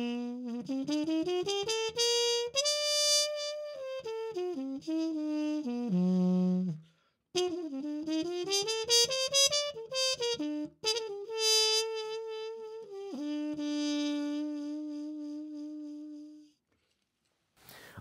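Trumpet played through a stemless harmon mute (a Jo-Ral aluminum/copper bubble mute), giving the smoky ballad tone of the harmon mute with its stem removed. It plays a melodic phrase of rising runs, breaks off briefly about seven seconds in, then plays again and ends on a long held note.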